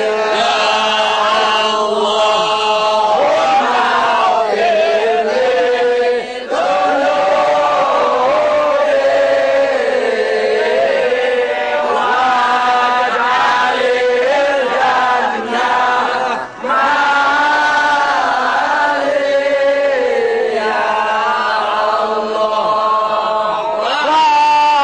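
A group of men chanting a maulid nabi recitation of Arabic praise poetry for the Prophet, singing together in a flowing melody with long held, gliding notes. The chant dips briefly about six seconds in and again about sixteen seconds in.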